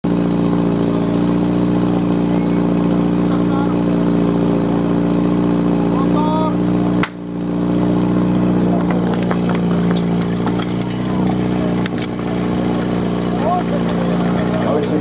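PS12 portable fire pump engine running steadily, with a single sharp crack about halfway through, followed by scattered clattering and knocking of hoses and couplings and short shouts.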